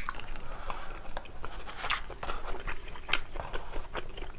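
Close-miked eating: chewing of soft rice cakes in spicy sauce, with scattered small clicks and taps as a wooden spoon moves in the plastic bowl, one sharper click about three seconds in.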